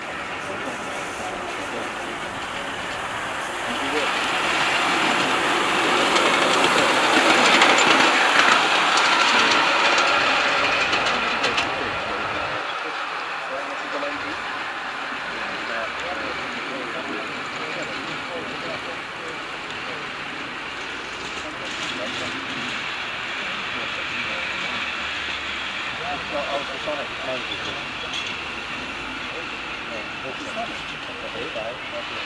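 Ride-on model Ivatt 2-6-2 tank steam locomotive running along the track with a continuous steamy hiss, swelling to its loudest about eight seconds in and easing off as it moves farther away.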